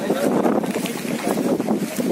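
Gusty storm wind buffeting the microphone, with several men's voices talking and calling out in a crowd.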